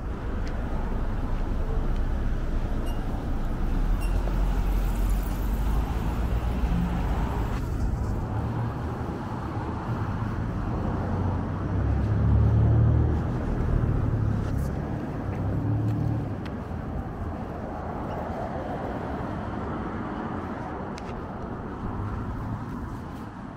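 City street traffic: car engines and tyres passing with a steady low rumble, swelling loudest a little past halfway as a vehicle goes by.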